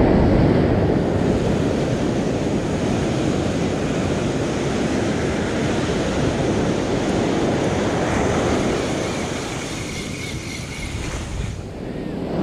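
Ocean surf washing up the beach and running over the sand, a steady rush of foaming water, loudest at the start and easing as the wave draws back near the end.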